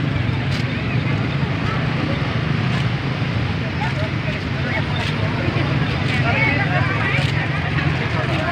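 Street crowd chatter, many voices at once, over a steady low engine hum from motorbikes, with a few sharp clicks every couple of seconds.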